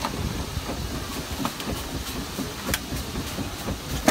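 Pause in a Dutch street organ's music between tunes: a low, irregular mechanical rattle with a few faint clicks while a folded cardboard music book is handled at the organ's key frame.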